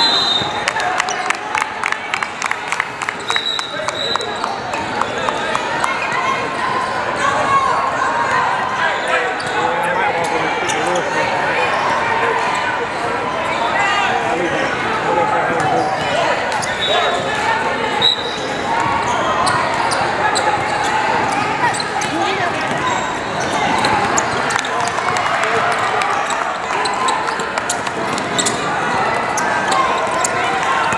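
Basketball game in a large gym hall: a ball being dribbled and bounced on the hardwood court under a steady mix of players' and spectators' voices.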